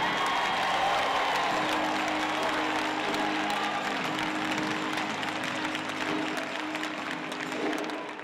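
A large audience standing and applauding, with some cheering, over music with long held notes.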